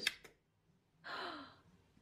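A couple of sharp clicks from the metal drinks can being handled, then a short breathy sigh or gasp about a second in.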